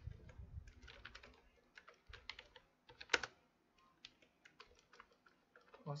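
Typing on a computer keyboard: an irregular run of separate keystrokes, with one much louder key press about three seconds in.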